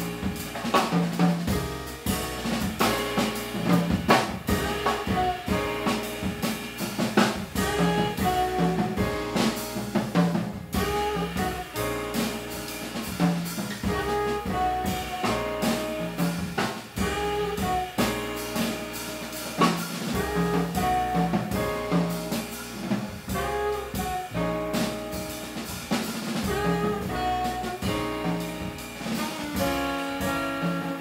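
A live jazz quartet playing: saxophone carrying the melody over piano, upright bass and a drum kit keeping time.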